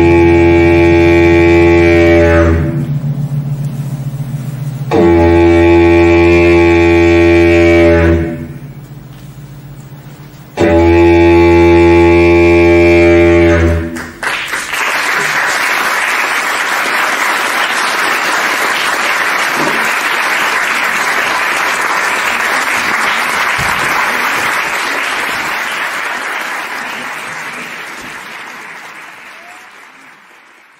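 Three long, loud held chords of live stage music, each lasting about three seconds with short pauses between, followed by audience applause from about halfway through that slowly fades out near the end.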